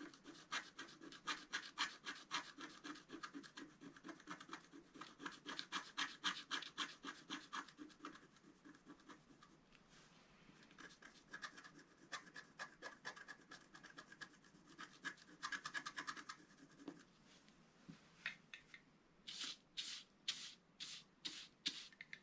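Wooden stylus scratching the black coating off a scratch-art sheet in quick short strokes. The scratching thins out about eight seconds in, picks up again, and ends with about six louder, separate strokes.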